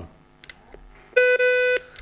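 A faint click, then a single steady electronic telephone beep lasting a little over half a second.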